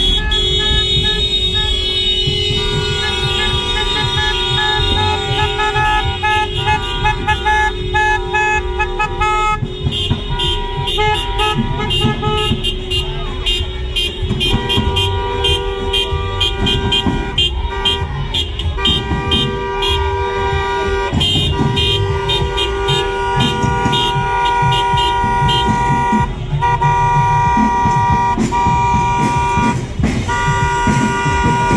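Several car horns honking at once, some held steady and some tapped in quick repeated beeps, over the low sound of slow-moving car engines.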